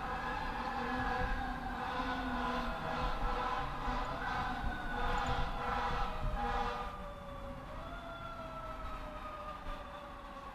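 Fire engine siren wailing ahead of the car, its pitch falling slowly and stepping back up twice, over steady road noise from the car.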